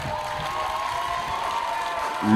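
Audience applauding steadily, with a faint held tone running underneath.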